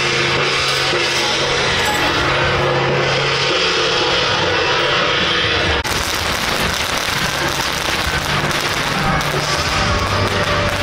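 Procession music with drums and cymbals; after a cut about six seconds in, a dense run of firecracker crackles sounds over the drumming.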